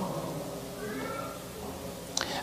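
Quiet room tone in a pause, with a faint, brief high-pitched cry rising and falling about a second in.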